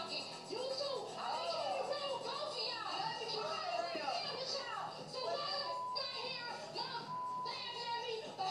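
Reality TV show audio from a television in a room: women's raised voices over background music, with two short steady beeps in the second half.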